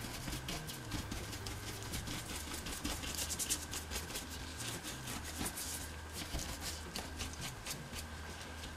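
Small stiff brush scrubbing and dabbing weathering pigment into satin fabric: many short, faint, scratchy strokes in irregular succession.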